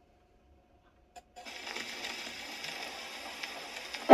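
A Paragon No. 90 phonograph's needle is set down on a spinning 78 rpm record with a click about a second in, followed by steady surface hiss and faint crackle from the record's lead-in groove before the music begins.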